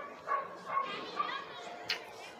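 A dog barking about five times, short high-pitched barks spread across two seconds, with a sharp click near the end.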